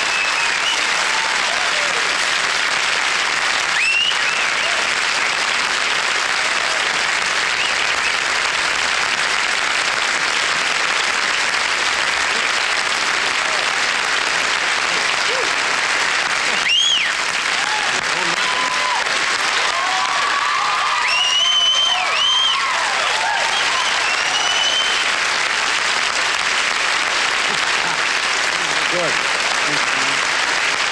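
Studio audience applauding steadily at the end of a song, with a few whoops and whistles rising above the clapping now and then.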